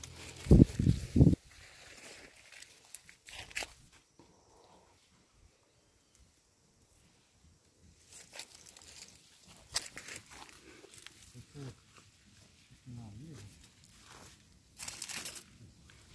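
Dry leaf litter and plants rustling and crackling under footsteps and searching hands, with a few heavy handling bumps on the phone's microphone about a second in.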